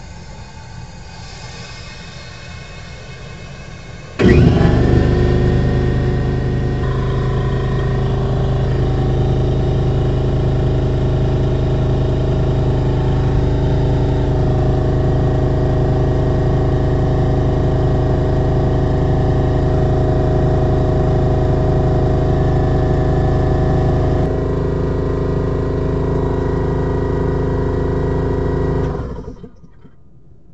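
Portable air compressor starting abruptly about four seconds in and running steadily, pumping air into the motorhome's rear air-suspension tank, then stopping just before the end.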